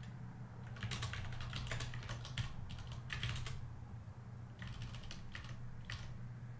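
Typing on a computer keyboard in two runs of quick keystrokes: a longer run from about a second in to past three seconds, then a shorter run near the end.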